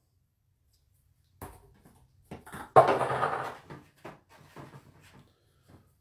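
A plastic lottery ball handled in gloved hands and dropped into an empty plastic water-jug ball drawer: a light click, then about three seconds in a sudden clatter that dies away over about a second, followed by scattered light ticks.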